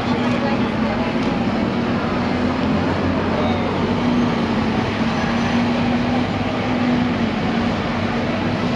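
Busy street background noise: a steady low hum under a murmur of distant voices.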